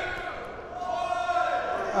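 A rubber ball bouncing on a concrete floor in a large hall, under indistinct voices.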